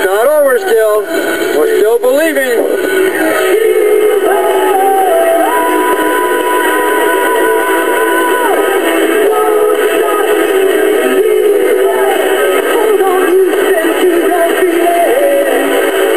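Music with a singing voice: wavering, wobbling notes in the first couple of seconds, then a long held high note in the middle, over a steady band backing.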